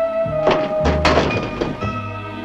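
Dramatic background music: sustained held notes broken by two percussive hits, the second, about a second in, landing with a deep thud.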